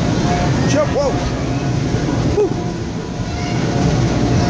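Steady low rumbling din inside an inflatable bounce house, the air blowers that keep it inflated running under a background of children's voices. A few short high-pitched child calls stand out about a second in and again near two and a half seconds.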